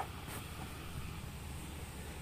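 Steady low background noise with a faint low hum, even throughout; the soil being dropped into the hole makes no distinct sound.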